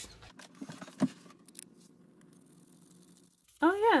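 Faint handling sounds of a melamine sponge on a vinyl play-set floor: a few soft clicks and one sharper knock about a second in, then a stretch of quiet rubbing and room tone.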